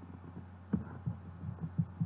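A steady low electrical hum on the recording, with a few faint, soft short knocks scattered through it.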